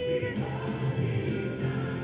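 A choir of many voices singing together.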